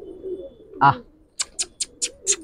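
Domestic pigeons cooing softly in the background, with a man's short drawn "aa" call to bring a flying pigeon down about a second in. In the second half comes a quick run of short, sharp, hissy clicks, about four or five a second.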